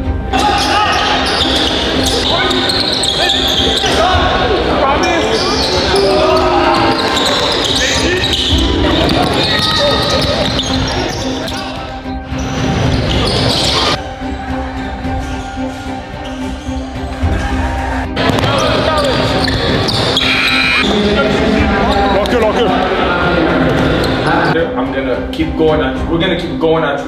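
Basketball game sounds: a ball bouncing on a hardwood court and players calling out, over background music.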